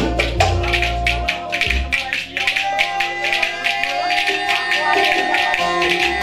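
Live Ankara oyun havası dance music: wooden spoons clacked in pairs by the dancers in a fast, even beat, over sustained melody-instrument lines. The low bass drops out about a second in and comes back near the end.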